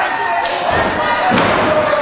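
Two heavy thuds in a wrestling ring, about a second apart, over continuous shouting voices.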